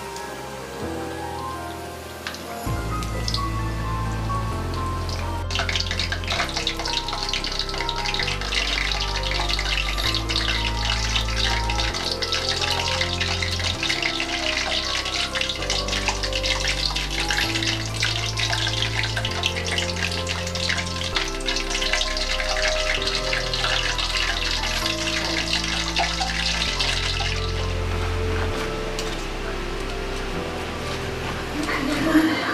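Pork belly deep-frying in a wok of hot oil: a dense crackling sizzle that starts suddenly about five seconds in and fades near the end, over background music.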